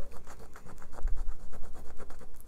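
A fingernail scratching at the gold scratch-off coating on a paper savings challenge card, in many quick short strokes.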